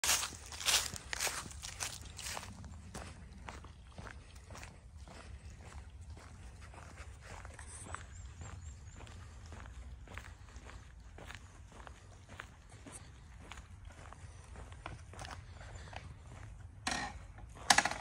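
Footsteps crunching through dry fallen leaves, loudest in the first two seconds, then softer, regular steps. Two short, louder sounds come near the end.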